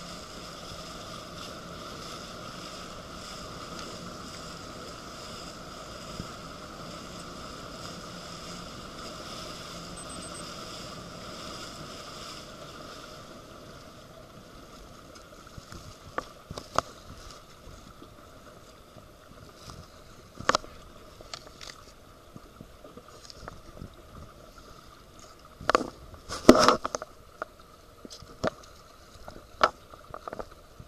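Steady drone of a small boat's motor on the water, falling quieter about 13 seconds in. After that come scattered sharp clicks and knocks, the loudest cluster a few seconds before the end.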